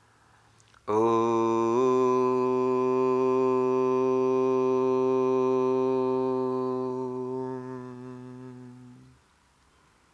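A man's voice chanting a single long Om, starting about a second in and held on one steady pitch for about eight seconds before fading away near the end.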